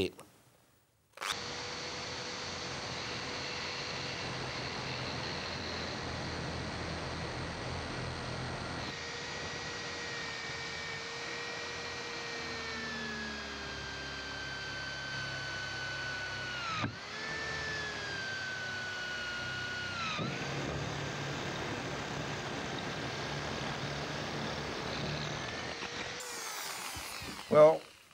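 Handheld corded electric drill with an ARTU multi-purpose bit drilling down through layered ceramic tile, wood, a steel brake disc rotor and red brick. The motor whine starts about a second in and sags gradually in pitch as the drill loads up, dips sharply twice and recovers, then stops just before the end.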